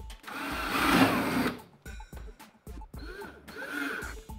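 Cordless drill/driver driving a screw into the keypad backbox. It runs in one long burst about a quarter second in and a shorter one near the end, with the motor's pitch wavering under load. Background music with a steady beat plays underneath.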